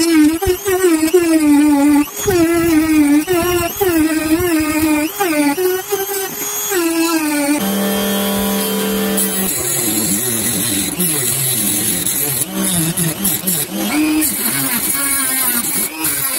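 Electric rotary tool on a flexible shaft whining at high speed, its pitch dipping and recovering again and again as a sanding drum bears on a wooden strip. About eight seconds in, a cutting disc on the tool runs against the wood with a steadier tone that turns rougher as it cuts.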